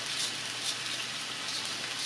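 Chopped onion and cabbage sizzling in butter in a hot cast-iron skillet: a steady hiss with a fine crackle.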